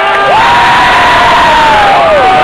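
A large crowd cheering and shouting. Over it, one voice holds a long yell that swoops up about a third of a second in, holds, and sags away near the end.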